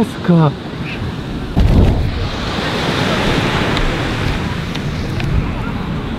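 A short falling vocal cry near the start. Then, from about a second and a half in, a loud steady rush of wind buffeting the microphone, mixed with surf.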